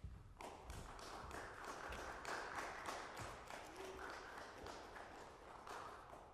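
Light applause from a small audience, a patter of hand claps that starts about half a second in and tails off near the end.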